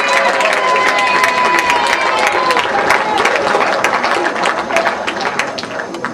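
Audience applauding, with voices calling out over the clapping; the clapping thins out near the end.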